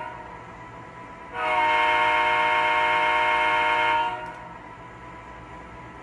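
Model-train diesel horn from an MTH Premier O-gauge GP38-2 locomotive's Proto-Sound 3 sound system, sounded from the remote: one long, steady blast of about two and a half seconds starting just over a second in, over a low steady hum.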